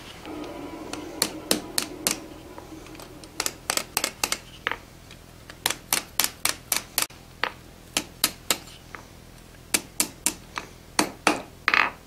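A hand hammer striking a red-hot iron bar on the steel anvil face to roll the scroll end. The blows come in quick runs of about six to eight, with short pauses between runs. A steady low hum fills the first three seconds, before the hammering starts.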